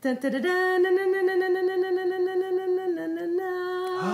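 A single voice singing one long held note with a quick wobble in it, dipping slightly in pitch near the end.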